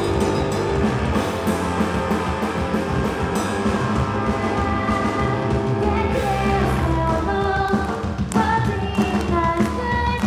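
Live punk-rock band playing loudly: distorted electric guitar, electric bass and drums. A singing voice comes in near the end.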